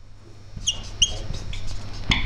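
Marker pen squeaking on a whiteboard as letters are written: short high squeaks, two clear ones about a second in.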